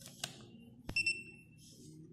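A handheld inkjet printer clicks and then gives a short, high electronic beep about a second in, fading over half a second, with light handling clicks around it.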